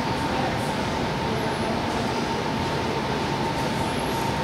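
Steady, even background noise with no distinct events.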